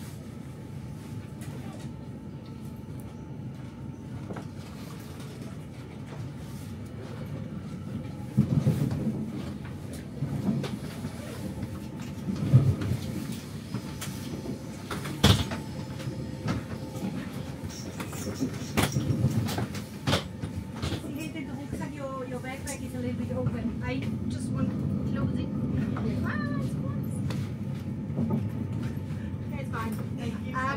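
Inside a moving Zürich S-Bahn S16 train: a steady low rumble of the carriage rolling on the rails. From about eight seconds in it is broken by sharp knocks and clatters, the loudest a single crack midway, and a few faint voices come in near the end.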